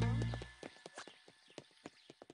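Cartoon footstep sound effects: a quick run of light taps, several a second. A held musical sound fades out in the first half second.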